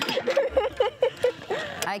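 A woman laughing nervously in quick repeated laughs, which taper off about a second and a half in.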